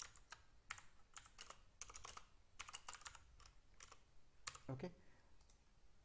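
Faint clicks of computer keyboard keys as a line of code is typed, in quick, irregular runs of keystrokes.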